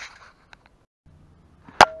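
A single sharp metallic clink near the end, ringing on briefly afterwards, as of a metal tool knocking against metal while working on the motorcycle engine; before it, only faint handling noise.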